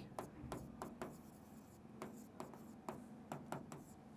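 Faint, irregular taps and light scratches of a stylus writing on a digital whiteboard screen.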